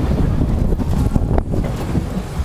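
Loud wind buffeting the microphone of a camera riding a drop tower, an uneven low rumble.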